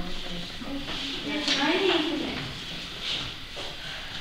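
Indistinct, quiet talk among several people, with one voice rising and falling briefly around the middle.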